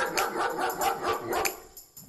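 A dog barking repeatedly over light music with tambourine-like jingles; the barking is the house's warning sound played when a contestant sleeps in the daytime.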